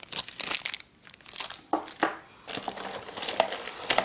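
Packaging being handled in a cardboard box: plastic wrapping crinkling and rustling in irregular bursts, with a brief lull about a second in.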